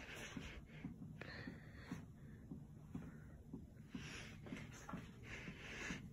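Casablanca Delta ceiling fan running, most likely on low speed, heard faintly as a low hum with a soft, uneven pulsing from the motor and turning blades.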